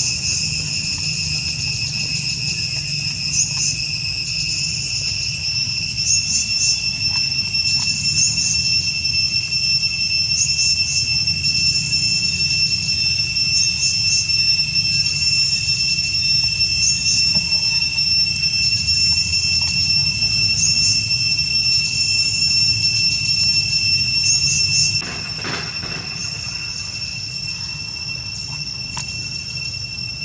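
Steady high-pitched drone of insects, with short chirps recurring every second or two over a low rumble. It gets quieter about 25 seconds in.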